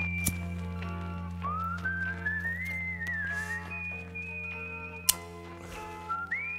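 Music: a whistled melody that slides up and down between held notes over a steady low drone, with a sharp click about five seconds in.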